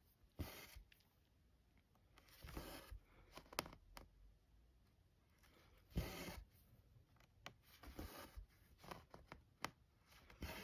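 Faint swishes of embroidery floss being drawn through Aida cloth as a tapestry needle is stitched in and out, a few times over, with occasional sharp little clicks of the needle against the fabric.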